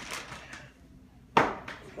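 Brown paper bag rustling as a boy handles it, then his short exclamation "oh" about a second and a half in, the loudest sound.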